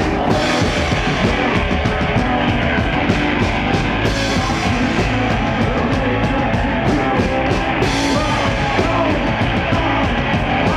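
Live psychedelic rock band playing loud: drum kit, distorted electric guitars and a male singer at the microphone, with a steady drum beat.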